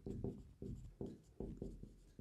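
Marker pen writing on a whiteboard: a quick, faint run of short strokes as letters are written.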